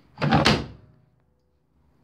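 Plastic detergent dispenser drawer of a Miele washing machine slid shut, one brief scraping slide about half a second long.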